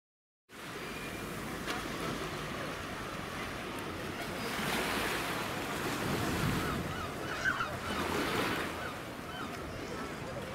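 Wind rushing over the microphone in a steady haze, under the indistinct chatter of an outdoor crowd, with a few raised voices in the second half.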